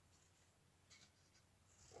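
Near silence: room tone, with a faint brief rustle about halfway through from the rope leash sliding through the knot.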